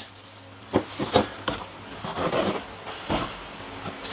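Clear plastic bag rustling and crinkling around a street-light housing as it is handled by hand, with a few short, sharp crackles or knocks.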